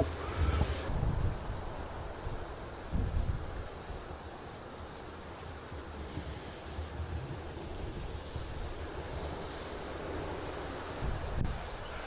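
Wind buffeting the microphone in low rumbling gusts over a steady outdoor hiss.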